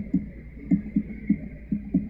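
Fingers tapping on a laptop's keys or trackpad, picked up as soft, low thumps at an uneven rate of a few a second, over a steady electrical hum from the PA system.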